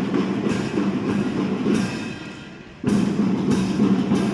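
A marching-band drum section of snare and bass drums playing a steady rhythmic intro, with strokes a few times a second. The playing drops off briefly a little after two seconds in, then comes back loud just before three seconds.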